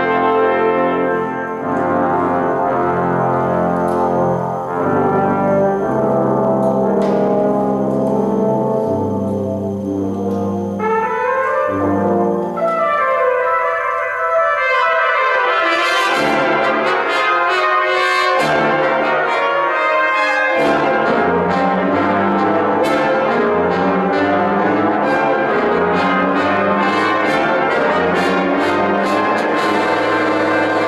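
A brass choir of trumpets, French horns, trombones and tuba plays a piece live, holding sustained chords. Around the middle the low brass fall silent for a few seconds, leaving the higher instruments. Then the full ensemble comes back in with short, rhythmic accented notes.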